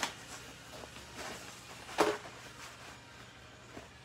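Handling sounds of a cloth cleaning pad being fitted onto a plastic spray-mop head: light rustles and knocks, the loudest a sharp click about two seconds in.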